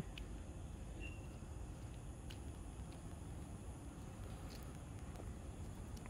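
Faint steady low rumble of outdoor background noise, with a few light clicks.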